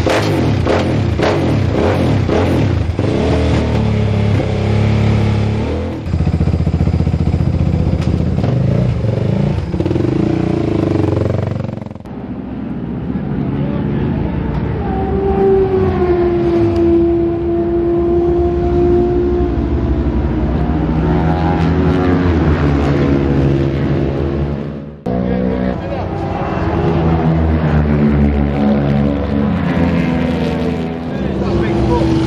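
Single-cylinder four-stroke Suzuki 450 race bike engine running and being revved in the paddock, heard in several short joined clips. Around the middle the engine holds a steady note, and later its pitch rises and falls.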